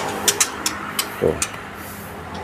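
A string of short, sharp, high clicks at irregular intervals over a steady low hum, with one short spoken word a little past a second in.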